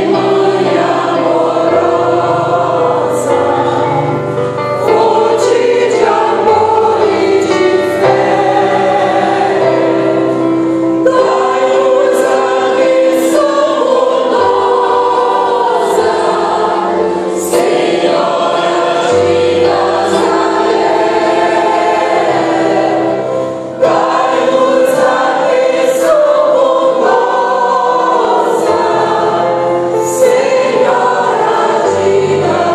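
Mixed choir of men's and women's voices singing a slow hymn in parts, accompanied by a digital piano holding sustained low chords. There are short breaks between phrases.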